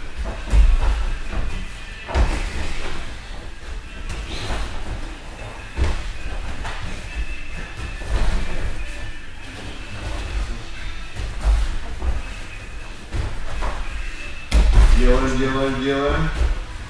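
A person thrown over a partner's back lands on padded gym mats with a heavy thud about half a second in. Several more thuds from bodies and feet hitting the mats follow as the throw practice goes on, with a loud one near the end.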